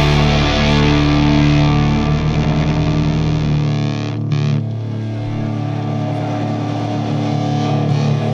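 Punk-rock music: distorted electric guitar chords ringing out through effects. A little before halfway the deep bass drops out, leaving the guitar sustaining.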